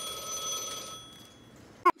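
A steady, high electronic buzz on one pitch, fading out about a second in.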